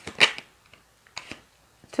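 A sharp snap of a card being pulled from a deck, followed by a few fainter clicks of the card being handled.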